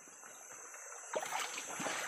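Shallow stream water trickling and lightly splashing as people wade and move through it. It is faint at first and gets louder from about a second in.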